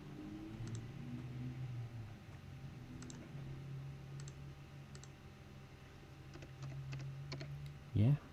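Computer mouse button clicks, scattered single clicks at first and then a quicker run of them over the last two seconds, over a low steady hum.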